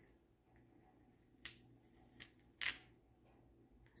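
Masking tape being peeled off watercolour paper in three short crackling pulls, the last one the loudest.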